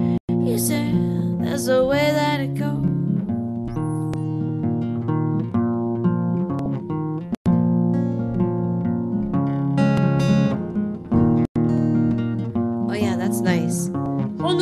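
Guitar strumming chords through an instrumental passage of a song, with a short sung phrase about a second in and singing picking up again near the end. The audio cuts out completely for an instant three times.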